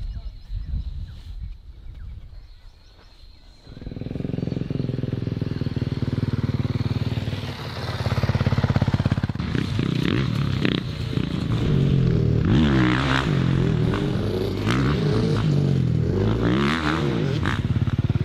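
Dirt bike engine starting up about four seconds in, then revving up and down over and over as it is ridden on a motocross track.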